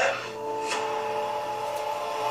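Movie trailer soundtrack playing through speakers: a steady, held drone of several tones, settling in about half a second in, with a faint tick early on.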